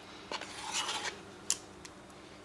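Metal spoon scraping thick Greek yogurt out of a plastic tub, a faint soft scraping, followed by a single sharp click about one and a half seconds in.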